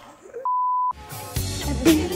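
A single steady electronic beep, about half a second long, set in silence, followed about a second in by upbeat pop background music with a drum beat.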